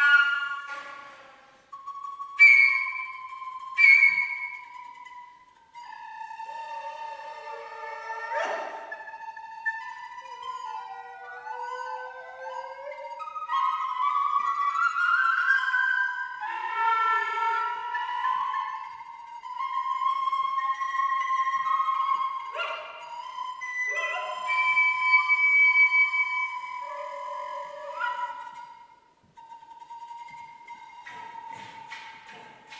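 Contemporary chamber music played live by flute, recorder, harp and harpsichord: high wind notes held long and weaving around one another, cut through by several sharp, sudden attacks.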